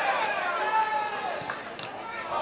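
Several men's voices shouting over one another during a football match, with a few long drawn-out calls that are loudest in the first second.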